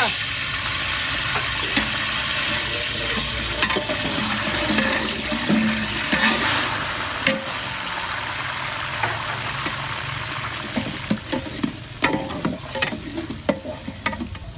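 Curry leaves and then chopped onions sizzling in hot oil in an aluminium pot. A metal ladle clinks and scrapes against the pot as they are stirred. The sizzle is loudest at the start and dies down over the last few seconds.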